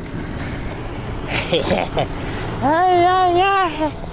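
A man's voice gives a long, wavering "ooh" of excitement near the end, after a few short vocal sounds about midway. Under it runs a steady low hum from the boat's engine, with wind and water noise.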